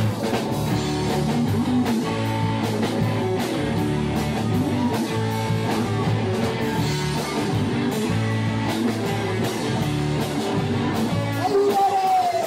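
Live rock band playing electric and acoustic guitars over a steady beat, with a sung note falling in pitch near the end.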